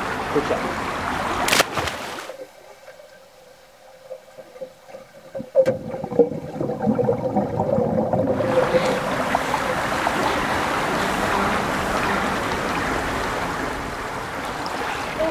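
A child diving into an indoor swimming pool: a sharp splash about a second and a half in, then the sound goes dull and muffled, as heard underwater, for about six seconds. After that the steady noise of the pool's splashing water returns.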